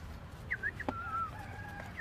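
Chicken calling: a few short chirping clucks, then a longer held call near the end.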